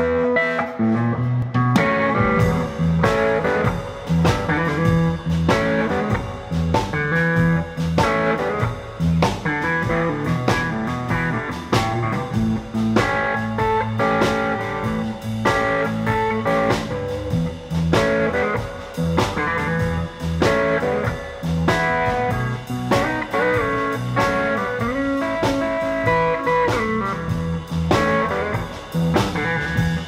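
A blues trio playing live: a Heritage H-150 electric guitar through a Fender Deluxe Reverb amp, over bass and a drum kit keeping a steady beat. It is an instrumental passage with the full band in from about two seconds in.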